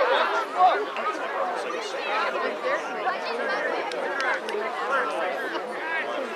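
Several voices talking and calling out over one another: sideline chatter from lacrosse spectators and players, with one louder shout about half a second in.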